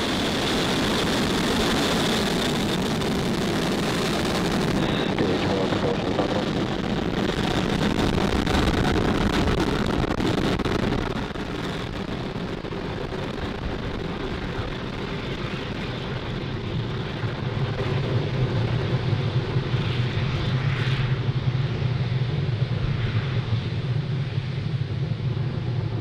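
Falcon 9 rocket's first stage, nine Merlin 1D engines, running at full thrust in the climb after liftoff: a continuous rumbling roar. Its high end fades after a few seconds and the low rumble comes to the fore as the rocket gets farther away.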